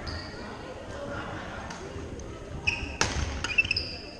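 Badminton players' court shoes squeaking on a hardwood gym floor: several short, high squeaks in the last second and a half, with a sharp smack about three seconds in, over the echoing chatter of a busy hall.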